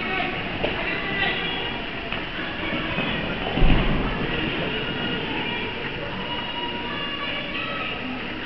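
Steady reverberant noise of a large indoor riding hall, with faint indistinct voices, and a single low thump about three and a half seconds in.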